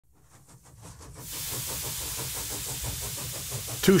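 Stuart 5A model steam engine running, fading in over the first second: a steady hiss of steam with a quick, even exhaust beat.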